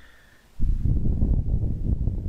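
A low rumble of air noise on the microphone, starting suddenly about half a second in and running for about two seconds.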